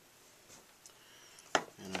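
A single sharp knock about one and a half seconds in, after a few faint small clicks from hands and tools working clay, and just before a man starts to speak.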